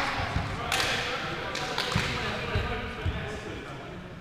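Indistinct players' voices and several sharp ball thumps, echoing around a sports hall.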